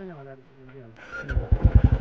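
Royal Enfield Bullet's single-cylinder engine: a drone that falls in pitch as the revs drop during the first second, then a steady fast run of exhaust thumps from about a second and a half in, growing loud.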